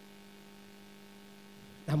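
Low, steady electrical hum from a church microphone and sound system, heard in a pause between spoken phrases; a man's voice comes back in just before the end.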